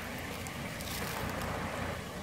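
Four-wheel-drive ute's engine running low and steady as it creeps up a muddy, rutted river bank, over the even rush of river water.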